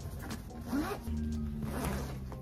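A fabric backpack's zipper being pulled in a few short strokes, over background music.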